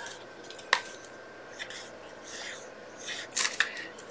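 Cardstock and craft supplies being handled on a desk: a sharp click about three-quarters of a second in, soft paper rustles, then a few quick clicks near the end.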